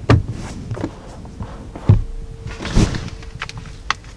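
A car sun visor being handled: a string of plastic clicks and knocks as it is slid out along its rod and moved, the loudest about two and three seconds in, with a sharp click near the end.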